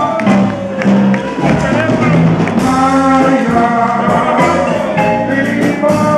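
Live band music: a man singing into a microphone over marimba and electronic keyboard accompaniment.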